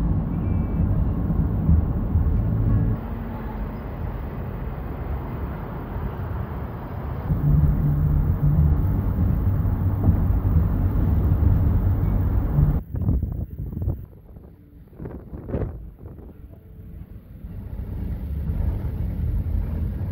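Minivan cabin noise while driving: a loud, steady low drone of engine and tyres. About 13 seconds in it drops away to a quieter stretch with a few short knocks, then builds up again toward the end.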